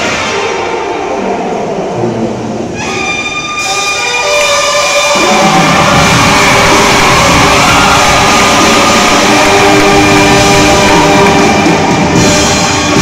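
Marching band brass section playing long held chords. It starts softer, more horns come in about three seconds in, and the full band with low brass plays loud from about five seconds.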